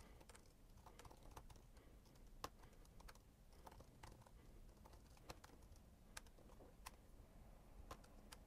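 Faint typing on a computer keyboard: irregular, quick key clicks.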